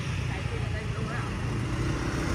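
Street traffic: motor scooters and cars passing close by, a steady low rumble of engines and tyres.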